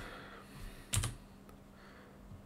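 A single key press on a computer keyboard about a second in, over a faint steady hum.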